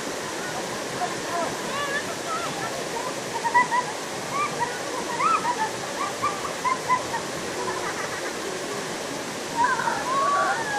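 A stream cascading over rocks at a small waterfall, rushing steadily, with short high-pitched children's voices coming and going through the middle and a louder child's call just before the end.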